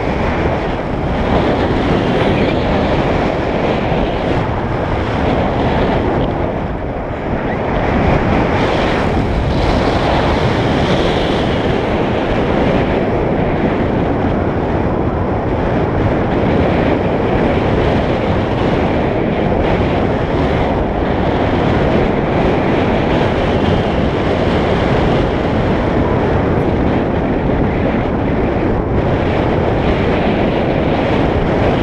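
Loud, steady rush of air buffeting the microphone of a camera on a tandem paraglider in flight, easing off briefly about seven seconds in.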